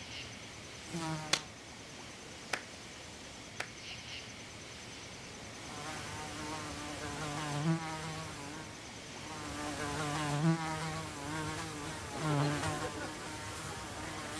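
A flying insect buzzing close around, its drone wavering up and down in pitch and loudness as it passes. A short buzz comes about a second in, then repeated passes from about six seconds in. A few sharp clicks sound in the first four seconds.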